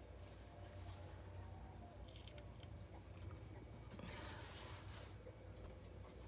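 Faint crackling as a dried peel-off gel mask is picked off the skin around the nose, with a longer soft rustle about four seconds in.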